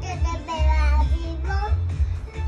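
A young child singing over music with a strong, steady bass, the voice holding and bending its notes.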